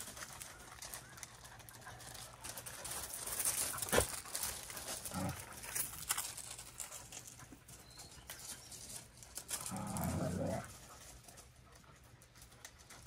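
A dog making short, low whining sounds, a brief one about five seconds in and a longer one near the end, with a single sharp click about a third of the way through.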